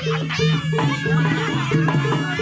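Live Javanese jaranan ensemble music: gong and gong-chime notes repeat in a steady, even pattern beneath a high, wavering melody line.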